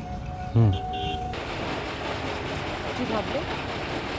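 Soft background music with long held notes and a brief spoken word, which stops suddenly about a second and a half in, giving way to a steady, dense outdoor noise, like wind or distant traffic, with a word or two of speech.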